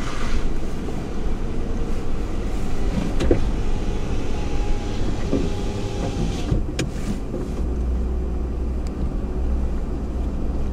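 Pickup truck heard from inside the cab, its engine running and its tyres rolling slowly over a rough grass track, a steady low rumble. A few brief scrapes and knocks come in the middle, from brush rubbing along the truck's body.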